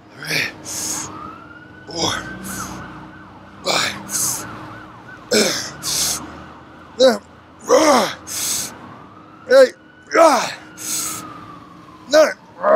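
A man's forceful exhales and short grunts, a pair about every one and a half seconds, in time with each rep of dumbbell shoulder raises. A siren wails faintly behind, its pitch rising and falling.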